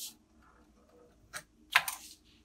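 A few short, sharp clicks and taps of small objects handled on a tabletop, the loudest near the end.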